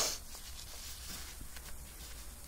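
Quiet handling sounds: faint rustling and small scratches over a low steady hum, after a short hiss at the very start.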